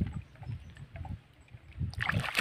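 Water sloshing and splashing as hands move about in shallow water, in irregular bursts, with low rumbles of wind on the microphone.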